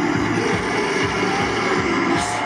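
Metalcore band playing live at full volume: heavy distorted guitars over a fast, steady kick drum, recorded from within the crowd.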